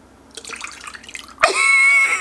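Water splashing and dribbling out of a mouth held open by a cheek retractor, into a bowl below, during an attempt to drink from a glass. About a second and a half in, a short, high held vocal cry cuts across it.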